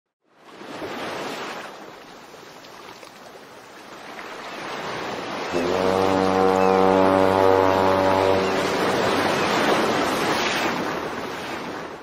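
Intro sound effect for a logo animation: a rushing noise that swells in and grows louder, with a deep, steady tone held for about three seconds in the middle, then fades out near the end.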